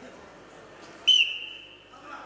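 A referee's whistle blown once, a single steady shrill blast of just under a second starting about a second in, as the wrestlers set up in the par terre ground position.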